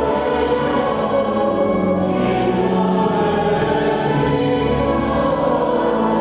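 Church choir singing a sacred piece, with long held notes and no break.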